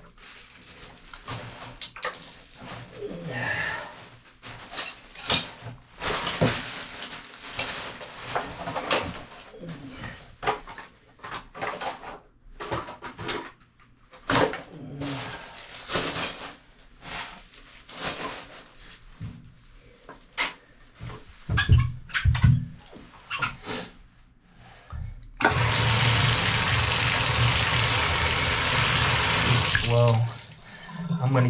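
Irregular knocks and clatter of items being handled in a bathtub. About 25 seconds in, water from the tub spout comes on suddenly and runs in a steady rush.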